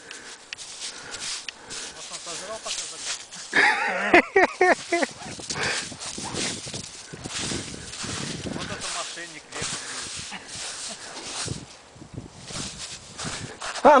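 A bare hand scraping and scooping through crusty, granular snow, a long run of short crunching scrapes while digging for a buried cookie. About four seconds in there is a brief burst of voice.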